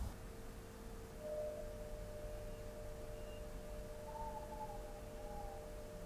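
Faint, steady pure tones at two held pitches, joined by a fainter wavering tone above them about four seconds in.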